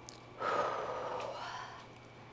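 A woman's audible breath out through the mouth, starting about half a second in and fading away over a second or so.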